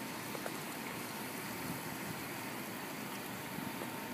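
Steady, even background hiss with a few faint ticks and no distinct event.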